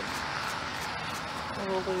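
Steady outdoor background hiss, with a person's voice starting about one and a half seconds in. The rocket itself is not heard.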